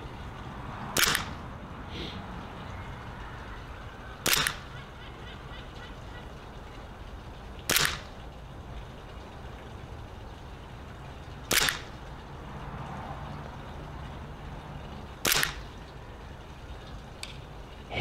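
WE G17 gas blowback airsoft pistol firing five single shots, one every three and a half to four seconds, each a sharp crack with the slide cycling.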